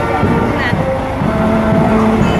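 A tour coach's diesel engine idling steadily, with people talking over it.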